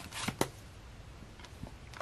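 Comic books and a paperback graphic novel being handled: a short papery rustle with a couple of light taps in the first half second, then a few faint taps as a hand takes the book from the pile.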